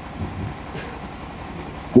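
Steady background noise in a pause between a man's phrases spoken into a microphone, with a faint low sound about a quarter second in; the voice comes back right at the end.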